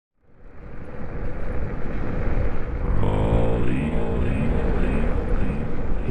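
Heavy wind rumble on the microphone from riding an electric bike at speed, fading in over the first second. About three seconds in, a brief pitched, voice-like sound slides down in pitch over the rumble.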